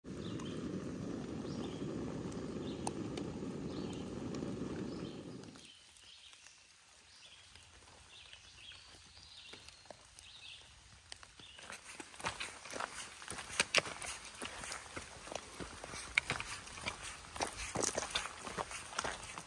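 Backpacking canister stove burning with a steady low roar that cuts off suddenly about six seconds in. Faint bird chirps follow, then, for the last several seconds, footsteps on a rocky dirt trail.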